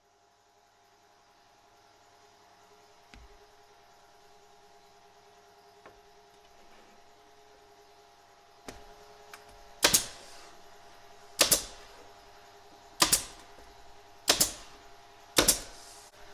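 Senco 18-gauge pneumatic brad nailer firing five times, about one and a half seconds apart, driving 1½-inch brads into plywood drawer parts. Before the shots there is a faint steady hum and a few light knocks.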